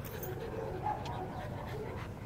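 A pit bull pressed right against the phone: a low, steady rustle of its body brushing the microphone, with a faint short whimper about a second in.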